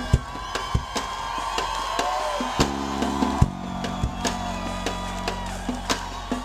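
A live reggae band playing an instrumental passage. Drum-kit strokes fall over a steady bass line and held higher notes that bend in pitch, and a thick sustained chord swells about halfway through.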